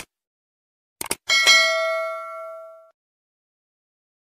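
Subscribe-button animation sound effects: a short click, then a quick double mouse click about a second in, followed by a bright bell ding, the loudest sound, that rings out and fades over about a second and a half.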